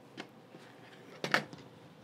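Light handling clicks and one sharp knock about a second and a quarter in, as a rotary cutter trims a fabric corner and is set down on a plastic cutting mat.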